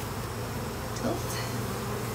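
A colony of honeybees buzzing steadily around an opened hive, its frames being lifted out for inspection.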